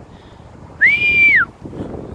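A man whistling through pursed lips: one short high note that slides up, holds for about half a second and drops away, a dog walker's whistle calling his dogs. Wind on the microphone and a distant traffic hum are underneath.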